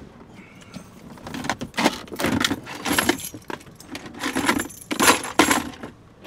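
Rummaging and rustling as a wallet on a metal chain is dug out of a car's console, the chain jingling and clinking. The jingling starts about a second in and is busiest from about two seconds to near the end.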